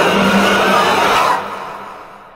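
Film-trailer sound design: a loud, dense wash of noise over a steady low drone, fading away over the second half as the picture goes to black.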